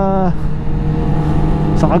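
Yamaha R6's inline-four engine running at a steady cruise, a constant low hum under the noise of the moving bike.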